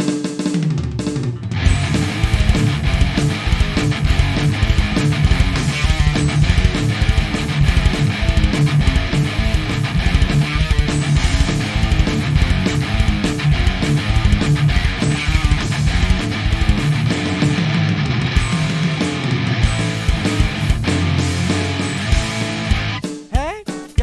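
Instrumental break of a rock song: guitar over a full drum kit with bass drum and snare, played as a steady beat. It thins out about a second before the end.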